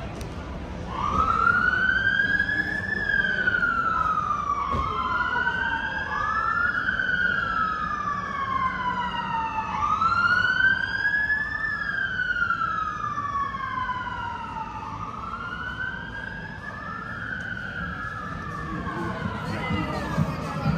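Two emergency-vehicle sirens wailing out of step, each a slow rise and fall in pitch. They start about a second in and fade a little toward the end.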